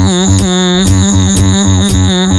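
Beatboxer performing into a handheld microphone: a held vocal note, steady in pitch, over a pulsing bass pattern of about three to four beats a second.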